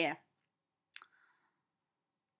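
A single short, sharp click about a second in, with near silence around it.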